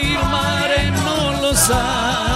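An older man singing an old Italian song into a handheld microphone, his voice wavering in pitch, over instrumental accompaniment with a steady bass. A short hiss cuts in about one and a half seconds in.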